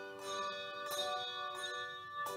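Handbell choir playing a hymn arrangement: chords struck roughly once a second, each ringing on with a cluster of sustained bell tones.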